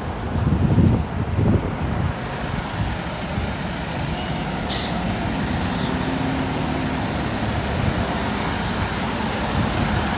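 City street traffic noise: a steady rumble of passing vehicles, louder in the first two seconds, with two short hisses about five and six seconds in.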